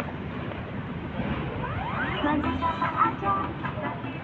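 Busy city-street ambience: a steady wash of road traffic, with passers-by talking close by, their voices strongest in the second half. A short rising tone sounds just before two seconds in.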